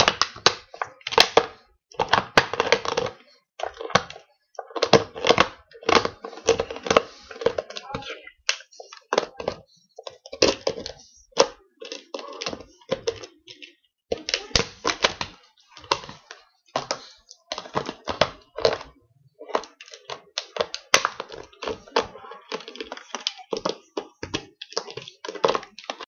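A Staffordshire bull terrier chewing a plastic drink bottle: the plastic crackles and crunches in irregular bursts of sharp clicks, with short pauses between bites.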